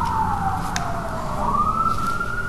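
Emergency-vehicle siren wailing, one slow fall in pitch that sweeps back up near the end. A single sharp click sounds about three-quarters of a second in.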